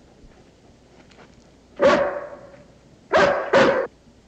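A large shepherd-type dog barking three times: one bark about two seconds in, then two quick barks in a row near the end.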